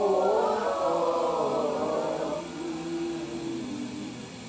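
A group of Khmer Buddhist devotees chanting together in unison. Many voices come in strongly at the start, then settle into a lower held note about two and a half seconds in.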